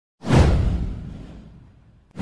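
Whoosh sound effect with a deep rumble. It hits suddenly a moment in, sweeps downward in pitch and fades away over about a second and a half.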